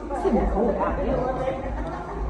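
People's voices chattering, with a laugh near the end.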